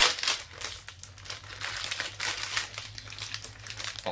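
Shiny mystery-pack wrapper being torn open and crinkled by hand. Rapid irregular crackling, loudest right at the start.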